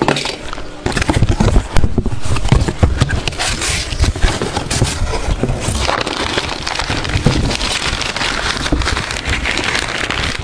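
Handling noise from a handheld camera being moved and fumbled close to its microphone: dense crackling and rustling with many small knocks.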